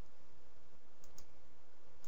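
A few faint computer mouse clicks, two in quick succession about a second in, over a steady low hum and hiss of room tone.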